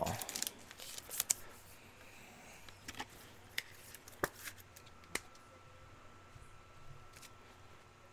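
Trading cards and card packs being handled on a table: sparse soft clicks, taps and slides of card stock, a few sharper ones about one, three, four and five seconds in.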